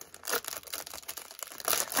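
Plastic packaging rustling and crinkling as haul items are handled, in irregular scrapes and crackles.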